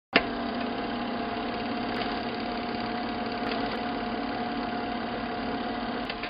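Steady mechanical hum of a refrigerated display counter's cooling unit, with one held mid-pitched tone over an even whirr, cutting in abruptly just after the start.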